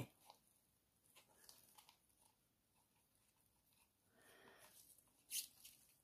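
Near silence, with a few faint light ticks and a soft scrape about four seconds in: a stir stick working against the inside of a plastic mixing cup as resin is scraped out into a silicone mould.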